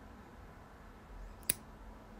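A single sharp snip of bonsai scissors cutting a thin succulent branch, about one and a half seconds in.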